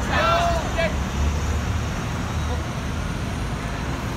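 Street sound of a protest march on a city road: a voice calls out in the first second, then a steady low rumble of road traffic.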